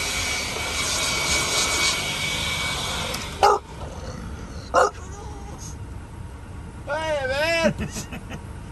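A small battery-powered motor in a handheld cordless tool runs with a steady whine and hiss, then switches off about three seconds in. Two short sharp sounds follow, and a brief voice comes near the end.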